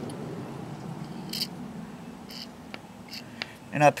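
A few faint, scattered clicks and soft squishes from hands handling the plastic engine housing of a Troy-Bilt four-stroke string trimmer, over low background noise; a man's voice begins at the very end.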